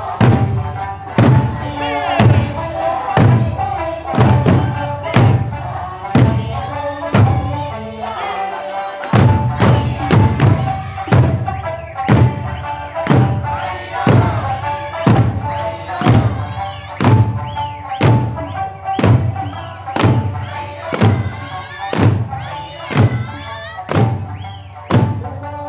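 Eisa drumming: large odaiko and shime-daiko drums struck together in unison, about one beat a second, over Okinawan folk music.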